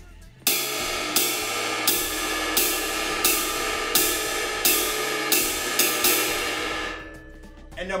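Ride cymbal struck with a drumstick in a swing jazz ride pattern, played with intensity: strokes come about every two-thirds of a second with a skip note in between, over a continuous ringing wash. It starts about half a second in and the ring fades away near the end.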